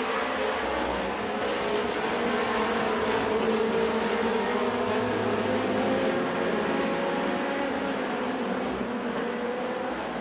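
Several mini stock race cars running laps on a dirt oval: a steady blend of engine drones held at speed, the pitch wavering slightly as the cars pass.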